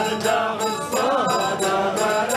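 Live Amazigh rways music: voices singing in a chant-like melody over a ribab and a steady percussion beat.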